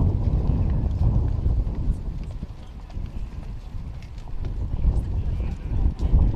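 Outdoor wind rumble on the microphone, with footsteps on stone steps and indistinct voices, easing a little in the middle.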